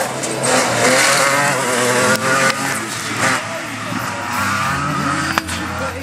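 Off-road racing buggy driven hard on dirt, its engine revving up and down as it slides through a corner.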